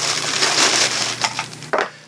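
Clear plastic bag holding power adapter plugs crinkling and rustling as it is handled and opened, with a short sharp click near the end.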